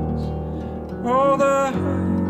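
Acoustic guitar picked over sustained piano chords, with a man's voice singing one held, slightly wavering note about a second in.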